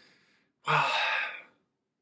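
A man's breathy sigh: one exhale, under a second long, about a third of the way in.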